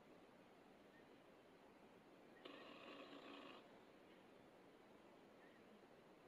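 Near silence: faint room tone, with one faint sound lasting about a second midway.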